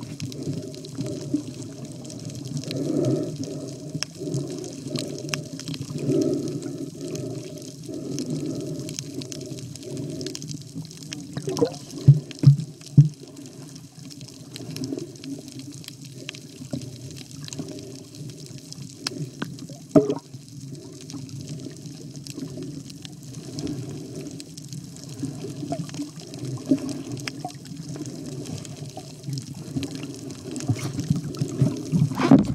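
Muffled water sloshing and bubbling during snorkeling, most of it low in pitch, as heard through a waterproof camera housing. A few sharp knocks stand out about twelve seconds in and again near twenty seconds.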